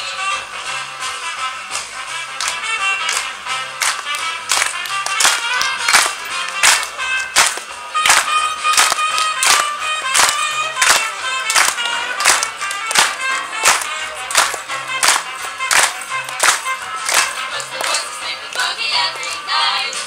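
Three young female voices singing close-harmony a cappella with no clear words. From about four seconds in, a crowd claps along on the beat, about two claps a second.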